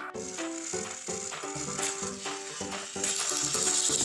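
Upbeat background music, joined about three seconds in by the steady high whirring of a battery-powered toy train's geared motor.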